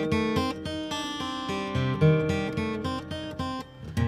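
Solo acoustic guitar in a folk song, a run of picked notes and chords between sung lines, dipping briefly near the end.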